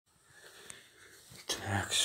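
Faint room noise with a single light click, then a man's voice starts near the end.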